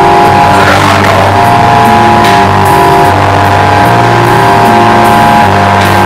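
Loud live band music: held, droning chords over a low bass line that changes note about every second, with no voice.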